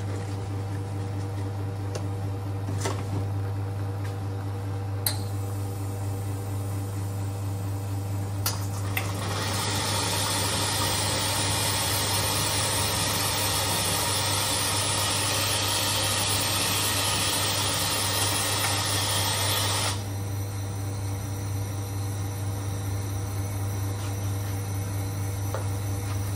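Espresso machine steam wand hissing steadily for about ten seconds, starting about nine seconds in and cutting off abruptly, over the machine's constant low hum. A few sharp clicks and knocks come before it.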